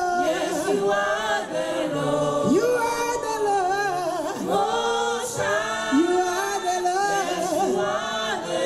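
Gospel group singing unaccompanied in several voices, with a woman's lead voice over the ensemble, in the Nigerian style of Christian spiritual song.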